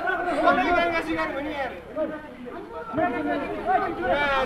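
Several people talking over one another in Nepali: casual chatter of onlookers close to the microphone.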